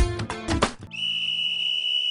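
Strummed guitar music that cuts off just under a second in, followed by a whistle blown on one long, steady high note.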